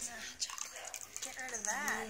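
A ladle stirs hot chocolate in a large stainless steel urn, with faint liquid sloshing and scraping. Near the end a voice makes a short wavering, sing-song sound.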